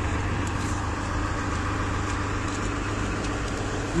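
Car engine idling: a steady low hum with a faint, even drone over it.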